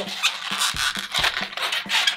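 Red 260 latex twisting balloon rubbing and squeaking under the fingers as its twisted bubbles are rolled over one another: an irregular, scratchy run of squeaks.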